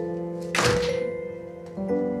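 An apartment's front door shut with one solid thunk about half a second in. Background music of held notes plays throughout.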